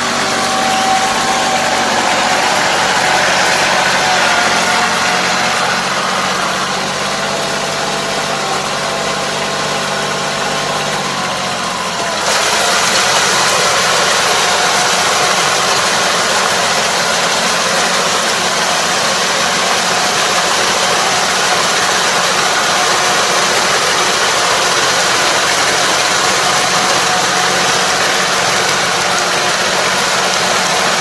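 Kubota KL270 semi-crawler tractor's diesel engine running steadily as it pulls a Kobashi 3-metre harrow through a flooded rice paddy, puddling the mud. About twelve seconds in the sound abruptly turns brighter and more hissing, and the engine's low hum fades into it.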